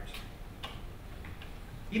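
A pause between spoken sentences: low room hum with a few soft clicks, and a man's voice starting again right at the end.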